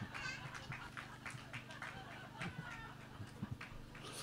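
Faint laughter from an audience after a punchline: a few short, high, wavering bursts of voice, with scattered small clicks, over a low steady hum from the sound system.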